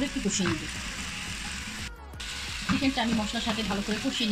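Chicken drumsticks sizzling as they fry in oil in a nonstick frying pan, stirred and turned with a spatula. The sizzle cuts out briefly about halfway through.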